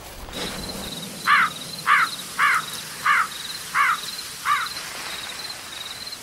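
Nature-ambience sound for the logo card: a faint, even cricket-like chirping keeps up throughout, while a louder call of rising-and-falling notes sounds six times, evenly about two-thirds of a second apart.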